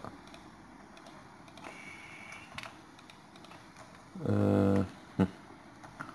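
Sparse, faint clicks of a computer keyboard and mouse. About four seconds in comes a short wordless voiced hum, the loudest sound, followed by one sharp click.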